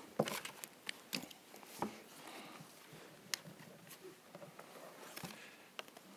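Faint, irregular clicks and taps of a laptop being worked to start a video, over soft room hiss.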